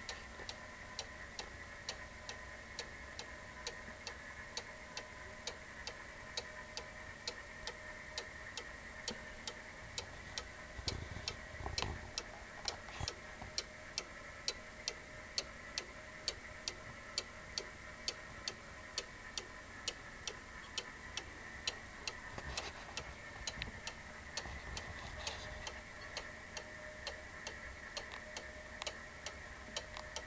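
Black Forest cuckoo clock's mechanical movement ticking steadily and evenly, with a brief low rumble about eleven seconds in.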